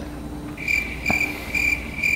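Crickets chirping as a comic sound effect: a steady run of high, thin chirps, about three a second, starting about half a second in. It is the stock "crickets" gag for silence after a question nobody answers.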